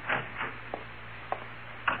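A handful of faint, irregular wooden knocks over the steady low hum and hiss of an old radio recording.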